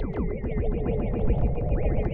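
Electronic improvisation on software synthesizers run through effects: a dense stream of short plucked notes, many dropping quickly in pitch, over a steady low bass.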